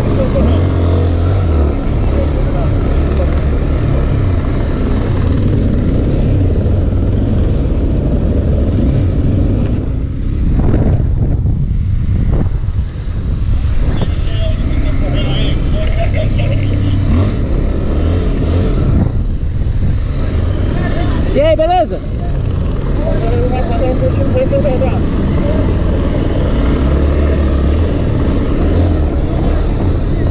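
Police motorcycle engine running as it rides along, with heavy wind rush on the helmet-camera microphone. A brief wavering high tone comes in about two-thirds of the way through.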